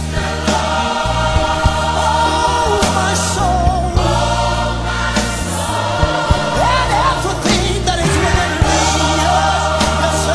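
Gospel music: a choir singing over a band, with a deep bass line that changes note every second or two and a steady beat.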